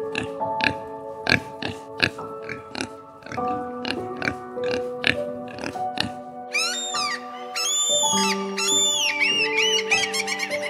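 Soft background music with long held notes, over a pig's short grunts repeated every half second or so. From a little past the middle, a run of high, arching bird calls comes in over the music.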